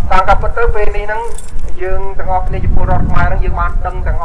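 Speech only: a man speaking in short phrases into a microphone, over a constant low rumble.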